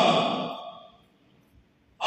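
A man's chanted recitation through a microphone ends on a held note that fades away over about a second, followed by near silence.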